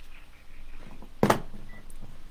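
A telephone handset being handled: one sharp knock about a second and a quarter in, then a short faint beep.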